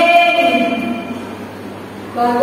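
A woman's voice drawing out a syllable for about a second, then trailing off into a lower, echoing murmur in a large bare room.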